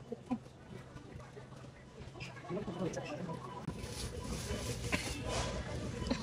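Thin plastic produce bag rustling and crinkling as onions are picked into it, louder in the second half, with faint voices and a low steady hum in the background.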